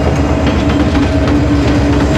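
Diesel locomotive passing close by: a loud, steady engine drone over a rapid low rumble of its wheels on the rails.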